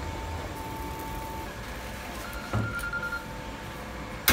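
Steady low background rumble, with a faint thin tone now and then and one short knock about two and a half seconds in.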